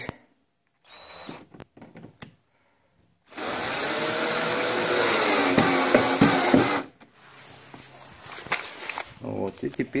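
Electric drill-driver driving a screw into the wheel-arch liner: a brief blip of the motor about a second in, then a steady run of about three and a half seconds whose pitch wavers and dips near the end, followed by light handling clicks.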